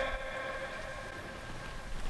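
Quiet room tone with a faint steady hum of several held tones; no racket or shuttle hits are heard.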